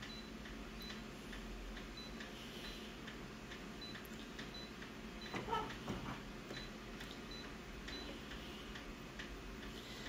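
Faint steady low hum with light, high ticks repeating about twice a second, and a few soft clicks about halfway through.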